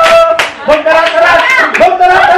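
A group of people singing a birthday song together and clapping in time, with about two or three claps a second.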